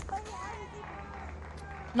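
A cricket bat strikes the ball once, a sharp crack right at the start, followed by faint distant voices over a low, steady ground hum.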